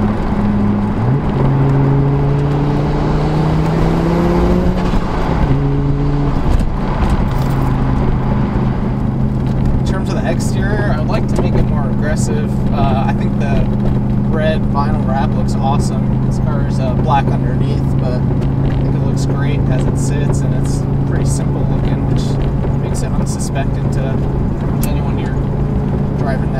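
Audi urS4's turbocharged 2.2-litre five-cylinder engine, heard from inside the cabin. Its revs rise over a few seconds, drop at a gear change about five seconds in, and then hold steady while cruising.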